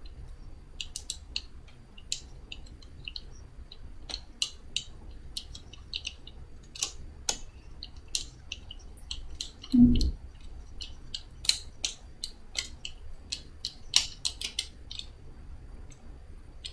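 Small sharp clicks and ticks of a DSLR being turned and adjusted on a Manfrotto Compact Light tripod's ball head, scattered irregularly throughout, with one louder thump about ten seconds in.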